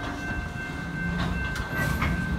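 Freight train's steel hopper cars rolling slowly past, wheels rumbling on the rails with a couple of clicks over the rail joints in the second half and a faint steady high whine.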